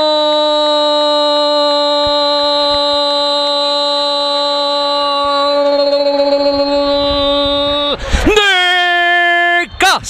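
A Spanish-language football commentator's drawn-out goal cry, 'Gooool', shouted as one long held note for about eight seconds. It breaks briefly near the end, then a second shorter held note follows.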